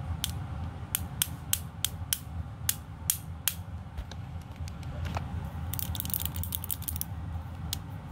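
Glossy magnetic stones clicking against each other in the hands: a string of sharp single clicks over the first few seconds, then a quick rattling run of clicks about three quarters of the way through.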